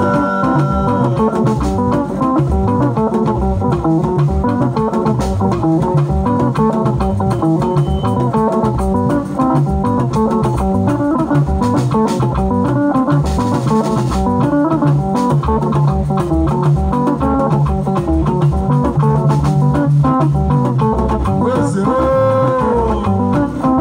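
Live band playing an instrumental passage with no singing: electric guitar lines over bass, drum kit and hand drums, in a steady, loud, even groove.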